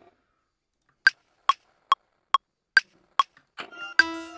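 Software metronome clicks from Ableton Live: six short woodblock-like ticks, about two and a half a second, with a higher-pitched accented tick on the downbeat every four beats. The beat's music starts playing near the end.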